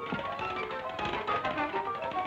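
Cartoon orchestral score playing a fast run of short staccato notes, with quick tapping percussion clicks through it.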